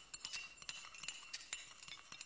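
Faint, irregular clinking of china cups and cutlery: many light chinks, each with a brief ring.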